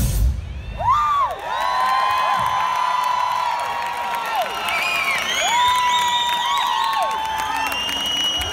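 A rock band of drums, bass and electric guitars cuts off on its final hit in the first half second. A large audience then cheers, with many overlapping long "woo" whoops that rise, hold and fall.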